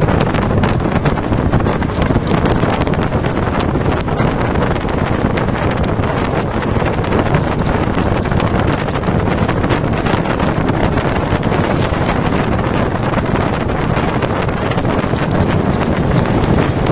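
Wind buffeting the microphone while riding in a moving vehicle, over steady road and engine noise, with many small rattles and knocks.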